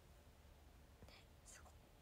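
Near silence: room tone with two faint breathy sounds from the woman's mouth, about a second in and again a little later.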